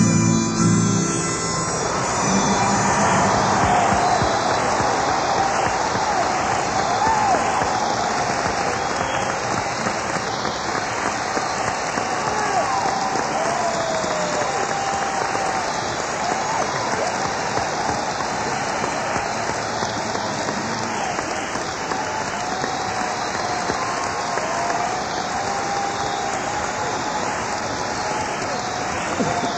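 The band's last chords ring out in the first second or two, then a concert audience applauds steadily, with voices calling out over the clapping.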